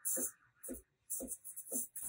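Breville Barista Express steam wand steaming milk in a stainless jug, hissing and sputtering in short, irregular bursts.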